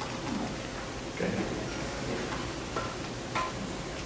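A few soft clicks of typing on a computer keyboard, spaced irregularly, over faint room murmur.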